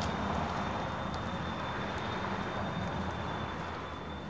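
Low, steady rumble of a motor vehicle, slowly fading.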